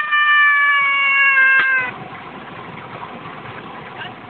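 A man's high-pitched laughing cry, held for about two seconds and sliding slightly down in pitch, then dropping away to quieter background.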